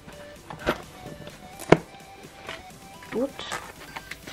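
Light knocks and taps of small cardboard trinket boxes being handled and set down, the sharpest about a second and a half in, over quiet background music.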